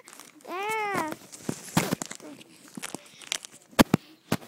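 A child's short high wordless vocal noise that rises and falls in pitch, followed by rustling and handling noises with scattered clicks, and two sharp knocks in quick succession near the end.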